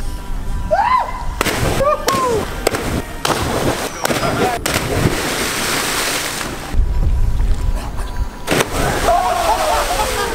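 Bodies splashing into water as people jump off a bridge, several separate splashes, with friends whooping and yelling over each jump and wind rumbling on the microphone.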